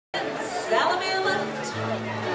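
Many people chattering in a large hall. About halfway through, two steady low held notes from the band come in, one after the other.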